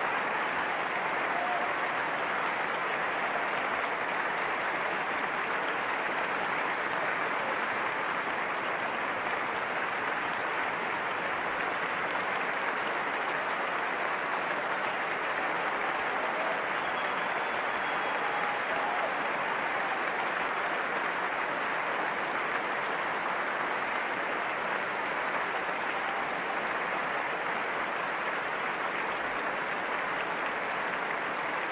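A large audience in a big concert hall applauding steadily, a sustained ovation that keeps up at an even level throughout.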